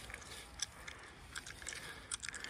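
Faint, scattered crunches and clicks of footsteps on dry fallen leaves.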